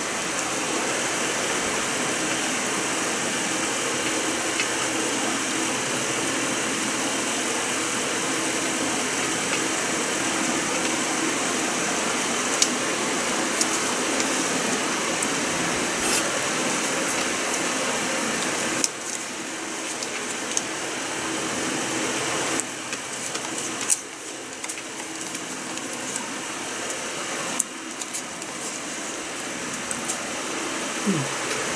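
Steady machine noise, like a running fan, drops abruptly in several steps after about two-thirds of the way through. A few sharp clicks stand out.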